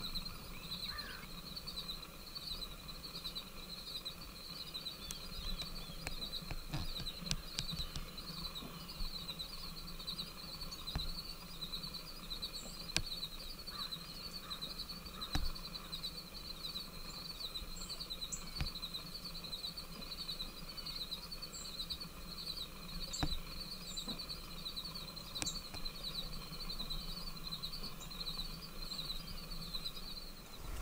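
Outdoor ambience dominated by a steady insect chorus pulsing evenly throughout, with a few short, faint bird chirps and scattered small clicks.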